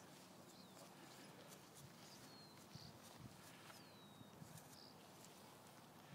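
Near silence: faint outdoor ambience with a few soft thuds around three seconds in and three faint, high, falling chirps.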